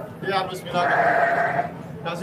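A sheep bleats once, a single call lasting about a second, amid brief background voices.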